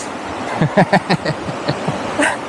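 Rushing water of a fast white-water mountain river, a steady noise throughout. A short run of laughter starts about half a second in and lasts under a second.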